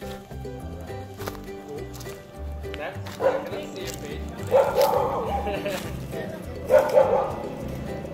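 Background music with a steady bass line, and a few short vocal sounds about three, five and seven seconds in.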